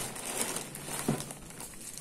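Clear plastic packaging bags crinkling and rustling as they are pressed and handled, with a light tap about a second in.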